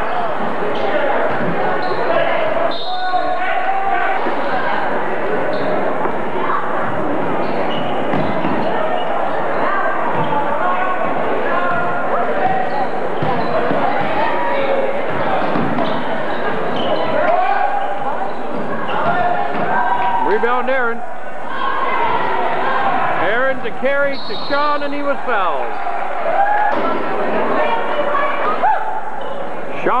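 Basketball ball bouncing on a gym's wooden floor amid steady crowd chatter and shouting voices, echoing in the large gymnasium, with a few louder calls about two-thirds of the way through.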